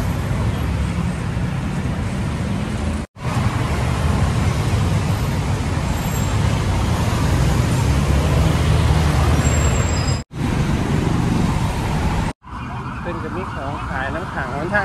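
City road traffic: cars passing on a busy multi-lane street, a steady loud noise with a heavy low rumble. The sound drops out for an instant three times, about three, ten and twelve seconds in, and after the last drop it is quieter.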